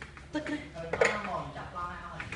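A sharp clink about a second in, amid background voices.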